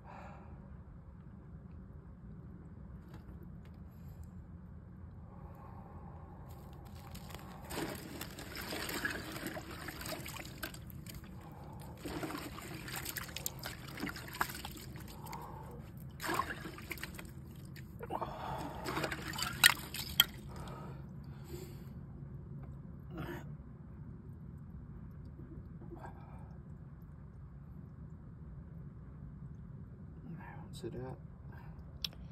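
Cold water sloshing and trickling in a clawfoot bathtub as the man sitting in it moves his hands and arms through it, in several stretches from about a quarter of the way in to about two-thirds through, with two sharper splashes just past the middle.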